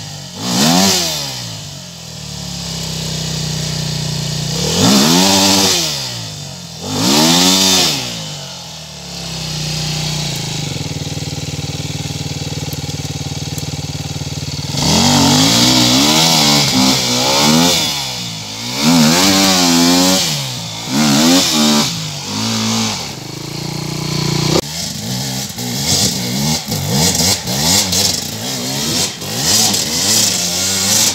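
Enduro dirt bike engine revving hard in repeated bursts, each rev rising and falling, as the bike is worked up a steep, loose slope. It settles to a steady lower note for several seconds near the middle, then goes into quicker, choppier throttle blips through the second half.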